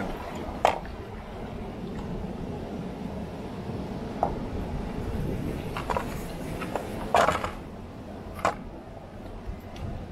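Hands handling seasoned whole fish in an aluminium bowl: a few scattered knocks and squelches as the fish are moved against the metal, over a steady low rumble.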